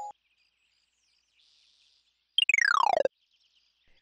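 A single cartoon sound effect: a whistle-like tone sliding quickly from high to low pitch in well under a second, about two and a half seconds in, after a near-silent pause.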